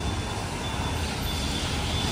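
Steady street traffic noise from vehicles on a wet road.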